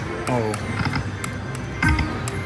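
Video slot machine playing its electronic spin and reel-stop chimes as $2 spins are played back to back, two spins in quick succession with a loud chime cluster near the end.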